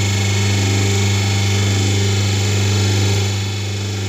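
Semi-hydraulic paper plate making machine running: a steady low electric-motor and hydraulic-pump hum with no change in pitch.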